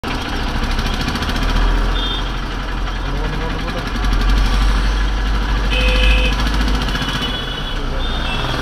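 Road and engine noise of a moving car, heard from inside the cabin through a dashcam: a loud, steady low rumble. Brief high-pitched tones sound about two seconds in and again around six seconds.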